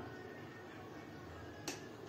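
Quiet room tone with one sharp click about three-quarters of the way through.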